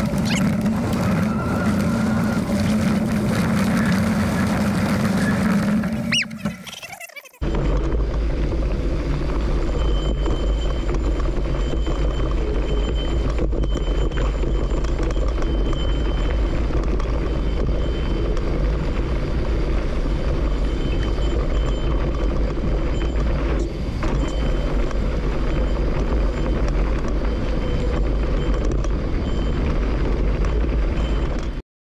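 Wind rushing over the helmet camera's microphone and tyres rumbling on a dirt trail as a mountain bike rolls along. The sound drops away briefly about six seconds in, then comes back as a steady, deeper wind rumble.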